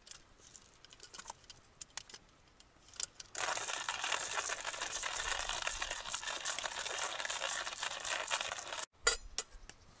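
Light clicks and clinks of small gear being handled, then a steady hiss that starts suddenly about three seconds in and cuts off abruptly near the end, followed by a few more clicks.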